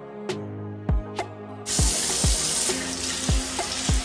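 A water tap running into a sink, turned on suddenly a little under two seconds in and running steadily, over background music with a deep bass beat.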